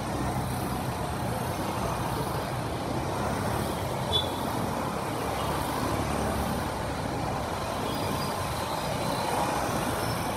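Steady road traffic noise from passing cars and trucks on a busy city street, with one brief high-pitched sound about four seconds in.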